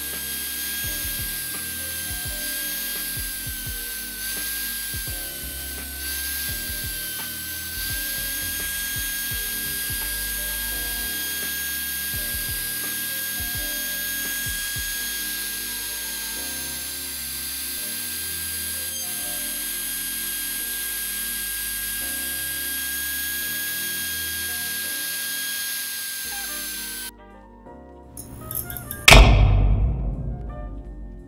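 MPCNC router spindle running with a steady high whine as the bit routes a nylon chopping board, with low tones under it that shift in pitch in steps. The machine sound cuts off sharply about 27 s in, and a loud hit comes near the end.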